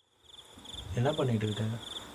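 Crickets chirping in a steady pulsing rhythm, with a person's voice speaking briefly about a second in.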